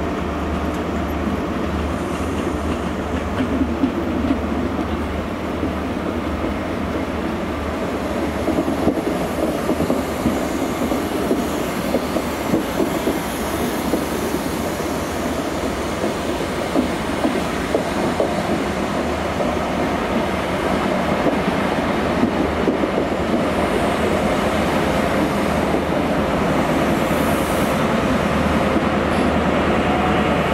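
First Great Western High Speed Train running past on the near track: a steady rumble of coaches with scattered wheel clicks over the rail joints. It grows louder over the last third as the rear power car comes by.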